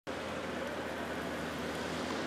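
Steady engine noise from vehicles on the street, an even low hum under a wash of outdoor noise.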